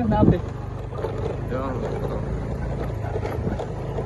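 A vehicle's engine running with a steady low hum as it moves slowly along a rough dirt track. A voice is heard briefly at the start and faintly again near the middle.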